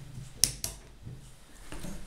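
Plastic screw cap of a bottle of chilled sparkling water being cracked open: two short, sharp snaps of the seal and escaping gas, a fifth of a second apart, with fainter handling sounds near the end. Opening releases the carbonation pressure, which sets the water freezing in the bottle.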